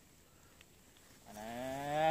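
Quiet for the first second or so, then one long drawn-out call from a voice that rises slowly in pitch and grows louder toward the end.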